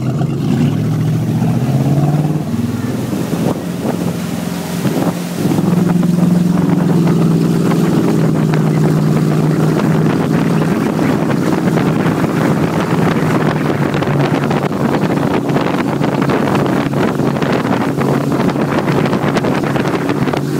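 Towing motorboat's engine pulling away under load: its pitch climbs over the first couple of seconds, then rises again about five seconds in and holds at a steady high run. Wind noise on the microphone over the engine.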